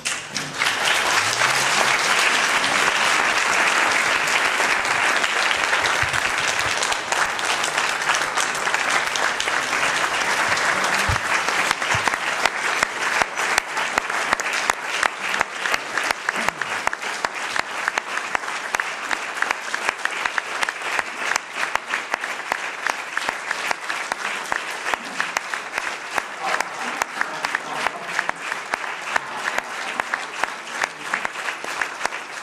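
Applause from an audience in a hall, breaking out the moment the speech ends and running on; fullest over the first several seconds, then with separate claps standing out more in the second half.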